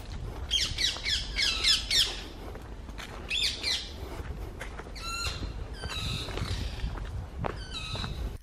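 Wild birds calling in woodland: quick runs of high, sweeping chirps near the start and again about three seconds in, then a few short clear whistled notes, over a low steady rumble.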